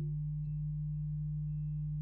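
Steady low electrical hum with no other sound, one unchanging tone.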